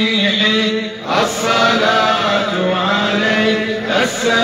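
A group of men chanting a salawat, the Arabic blessings on the Prophet, in long drawn-out melodic lines over a steady held low note, with a short breath break about a second in.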